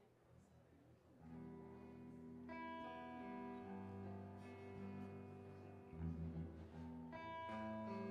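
Live band music: after a near-silent first second, a guitar starts playing slow sustained chords. Higher notes join about two and a half seconds in, and deeper bass notes near the end.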